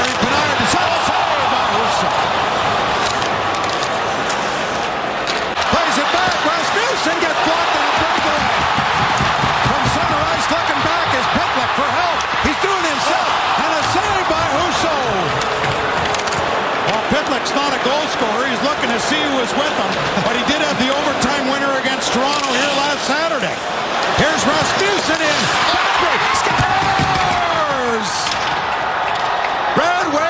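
Ice hockey arena crowd noise, many voices at once, with the sharp clacks of sticks and puck on the ice and boards. The crowd swells louder after a short dip about three-quarters of the way through.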